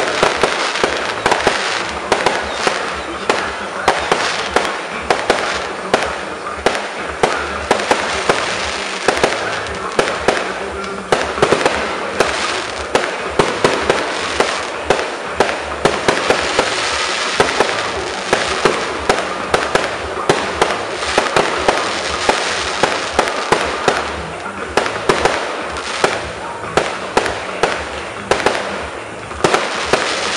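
Fireworks display: a rapid, continuous string of bangs and crackles from bursting aerial shells and rising rockets.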